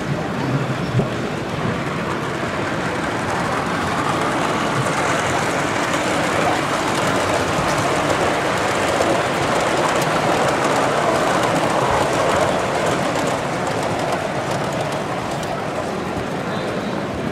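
O gauge model train running past on its track: a steady rolling rumble of metal wheels on the rails.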